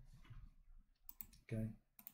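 Computer mouse clicks: two quick clicks just after a second in and one more near the end.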